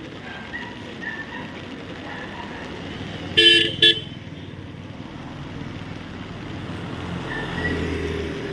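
A car horn gives a quick double toot a little over three seconds in, as a car passes on the wet road. Steady traffic noise runs underneath, and a low engine rumble grows near the end as a motor scooter comes closer.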